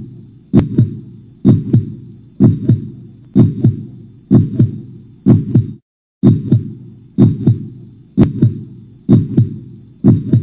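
Heartbeat sound effect: a steady lub-dub double beat about once a second, each pair low and loud with a short fading tail. The rhythm breaks off briefly about six seconds in, then resumes.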